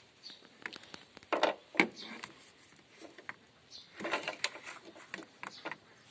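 Scattered clicks and knocks of a portable jump starter's metal cable clamps being handled and clipped onto a car battery, loudest about one and a half seconds in and again about four seconds in.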